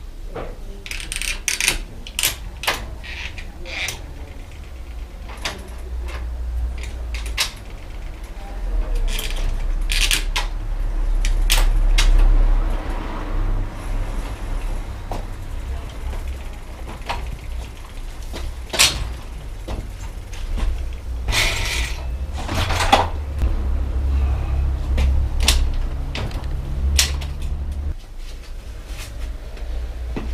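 Irregular metallic clicks and knocks of tools and bicycle parts being handled as a bike is worked on in a repair stand, with a dense run of knocks a little past the middle.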